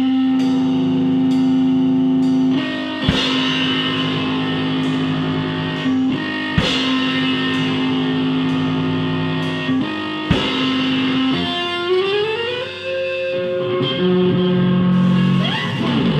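Rehearsing rock band playing an instrumental passage: electric guitar chords ringing over drums and bass, with a drum hit every three to four seconds. About 12 seconds in, a note slides upward in pitch.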